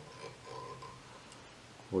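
Quiet room tone in a pause between words, with no distinct handling sounds; a man's voice starts again right at the end.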